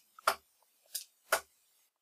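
Three darts hitting a dartboard one after another, each a short sharp thud, the last two close together.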